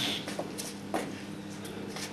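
Low hall room tone with a steady faint hum and a few faint scattered clicks, one at the start, one about half a second in and one about a second in.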